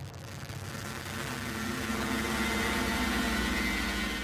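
Electronic intro sound effect for a glitch-style title card: a steady low hum with a wash of static over it. It starts suddenly and grows louder through the middle.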